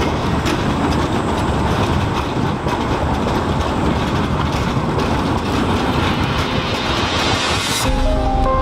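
Prague Škoda 15T low-floor tram passing close by on street track: a steady rumble of wheels on rail with scattered clicks. Near the end it builds into a rising rush that cuts off suddenly.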